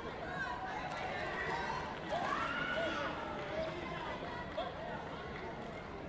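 Indistinct chatter of many voices in a large sports hall, with one louder voice rising and falling about two seconds in.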